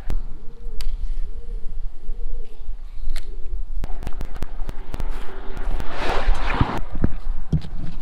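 A bird cooing in a repeated series of low hoots over a steady outdoor rumble, with scattered handling clicks. After about four seconds a rush of noise swells and fades away, like a vehicle passing on the road.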